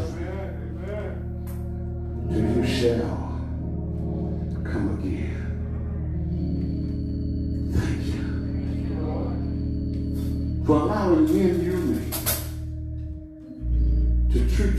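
Church organ holding sustained chords, with a man's voice coming in over it briefly twice; the music drops away for a moment near the end.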